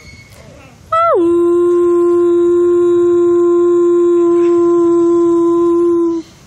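Grey wolf howling: one long howl beginning about a second in. It opens with a quick drop in pitch, then holds a single steady note for about five seconds.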